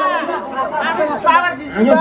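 Only speech: several people talking over one another in overlapping chatter, with a shouted "ayo" near the end.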